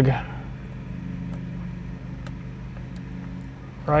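Steady low hum with two faint short clicks about a second apart, as plastic wiring connectors and the switch panel are handled.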